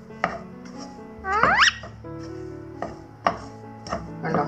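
Spatula knocking and scraping against a frying pan while stirring, a sharp tap every second or so. About a second and a half in, a rose-ringed parakeet gives one loud rising call, the loudest sound here.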